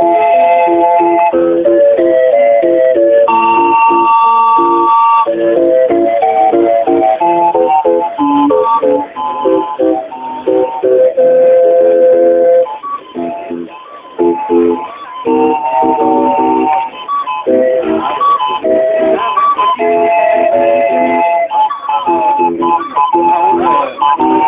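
Hand-cranked street barrel organ with wooden pipes playing a tune: a melody over steadily repeated accompaniment chords, with a couple of brief quieter gaps about halfway through.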